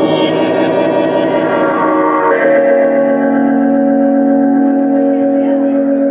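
Live band music: slow, held chords with no beat, changing to a new sustained chord a little over two seconds in.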